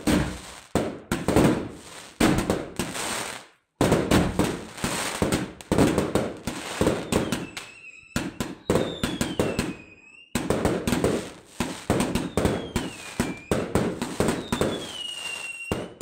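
Fireworks going off in rapid bangs and crackles. Several whistles that fall in pitch sound in the second half.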